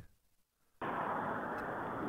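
Silence, then about a second in a steady low hiss on a telephone line as an incoming call is patched into a three-way call.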